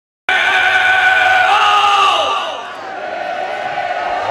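A rock singer's long, high yell into the microphone, amplified through the PA. It holds steady, then slides down in pitch about two seconds in and fades, over crowd noise.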